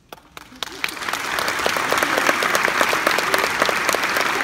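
Audience applause: a few scattered claps that swell within about a second into loud, steady clapping from a large crowd after a choral song ends.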